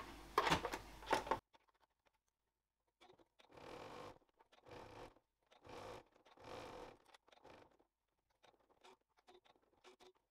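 Domestic sewing machine stitching in a string of faint, short runs of about half a second each, from about three seconds in. Before that, fabric and clips are handled briefly, then there is a moment of silence.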